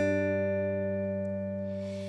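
Acoustic guitar: one chord strummed at the start and left to ring, slowly fading.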